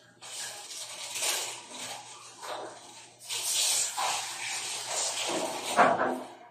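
Whispering: irregular bursts of soft, hissy breath sound with no clear voiced tone.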